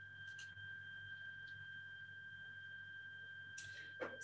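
Near silence with a faint, steady high-pitched whine: one unwavering tone with a fainter one above it, over a low hum.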